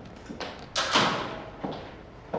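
A glass-panelled office door shutting with a thud under a second in, with a brief ringing tail and a couple of lighter knocks around it.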